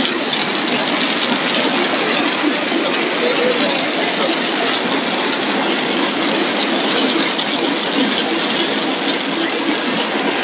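Corn snack extrusion line running: a loud, steady, dense mechanical noise from the extruder and its dough-sheet rollers, with no let-up.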